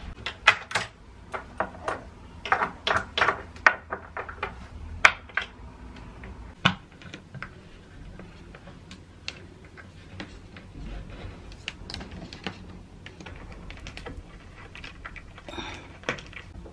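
Sharp metallic clicks and taps of a hex key (Allen key) working the bolts and fittings of a flat-pack cot bed. A quick cluster of clicks comes in the first few seconds, then sparser, fainter ticks.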